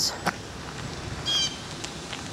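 Outdoor background noise with a single short, high bird chirp just over a second in, and a sharp click near the start.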